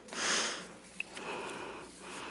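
A sheet of paper rustling as it is turned over on a lectern: a short rush of noise, then a small click about a second in and softer rustling after.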